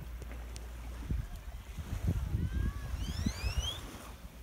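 Wind buffeting the microphone in a steady low rumble, with a few soft knocks, and some thin rising whistles near the end.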